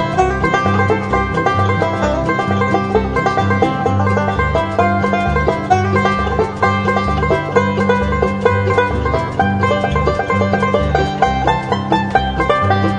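Instrumental break of a country-folk song, with no vocals: a banjo picks quick, dense runs of notes over a bouncing bass line and a steady rhythm backing.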